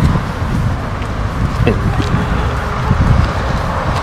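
Outdoor street noise: wind buffeting the microphone over the steady sound of road traffic.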